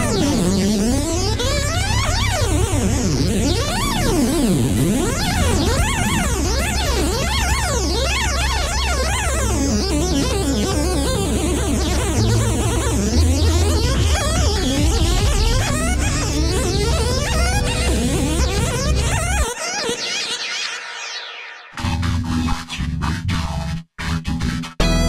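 Electronic music with a fast synthesizer shred: rapid runs sweeping up and down in pitch over a steady heavy bass. About twenty seconds in, the bass drops out and the music thins. It then comes back in a choppy, stuttering form and cuts out briefly near the end.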